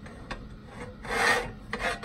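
Stainless steel kettle being shifted on a butane camping stove: two short rasping scrapes, the longer one about a second in and a shorter one near the end, after a few faint clicks.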